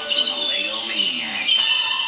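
TV commercial soundtrack: upbeat music with an excited, cartoonish voice over it.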